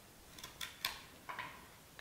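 A few faint clicks and snips as the stem of a xanadu leaf is cut shorter, about half a second to a second in, with a softer sound a little later.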